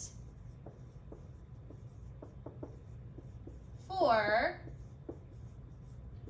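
Dry-erase marker writing on a whiteboard: a string of faint taps and short squeaks as the tip strokes out letters.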